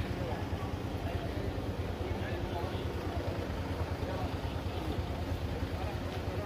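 Outdoor street background: a steady low rumble with faint voices in the distance.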